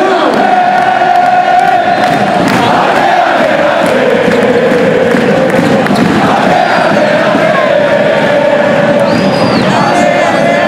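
Large crowd of basketball fans in an indoor arena chanting and singing together, celebrating a win. The sound is loud and steady, with the voices holding long notes.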